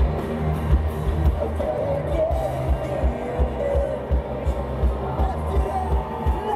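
Live pop-rock band playing through a stadium sound system: a heavy, regular kick-drum and bass beat with a wavering sung or guitar line above it.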